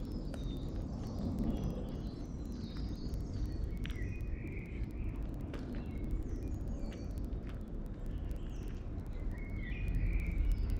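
Small birds chirping and calling on and off over a steady low outdoor rumble.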